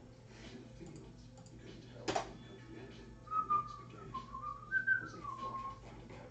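A person whistling a short tune, a few notes stepping and gliding up and down, starting about three seconds in. A single sharp click comes about two seconds in.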